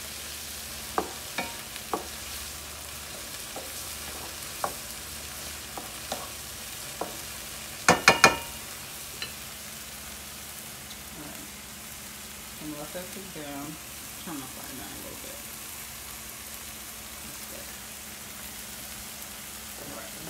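Diced bell peppers, garlic cloves and sofrito sizzling in butter in a nonstick frying pan, a steady hiss. A utensil taps and stirs in the pan during the first few seconds, and a quick cluster of sharp clinks comes about eight seconds in.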